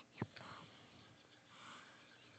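Near silence with faint breathy whispering and one short click just after the start.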